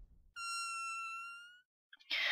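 A single high pitched tone from the channel's logo intro sting, held for just over a second, dipping slightly and then rising at the end before cutting off.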